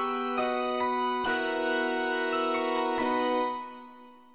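Organ and piano playing an instrumental introduction, held chords changing every half-second or so, dying away near the end.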